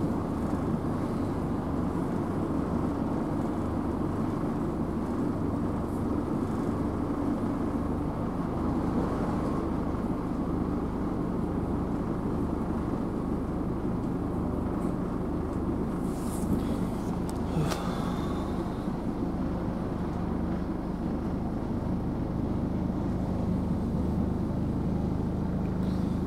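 Interior running noise of a Southern Class 313 electric multiple unit under way: a steady rumble with a low hum, and a few brief clicks about two-thirds of the way through.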